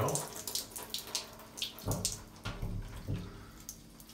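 Water spraying from a handheld shower head onto a wet cat's fur as the soap suds are rinsed off, the spray splashing unevenly.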